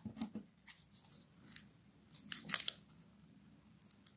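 Hands working with double-sided tape and paper craft pieces: a scattering of short, faint scratchy rustles and snips, bunched in the first three seconds.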